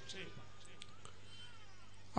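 Quiet room tone: a steady low hum with a few faint, thin gliding high tones.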